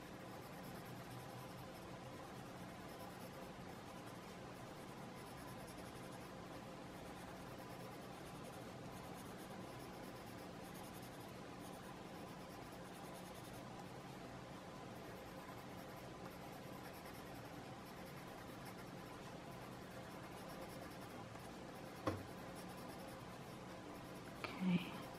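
Orange colored pencil shading on sketch paper, the lead rubbed back and forth in faint, continuous strokes over a steady low hum. One sharp click near the end.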